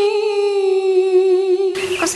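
A woman humming one held note, steady in pitch with a slight waver, cut off suddenly just before the end.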